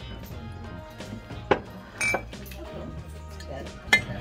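Background music playing over ceramic crockery being handled: three sharp clinks, about a second and a half in, at two seconds with a brief ring, and just before the end.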